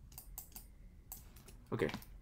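Computer keyboard keys clicking in an irregular run of quick keystrokes as a number is typed into a field.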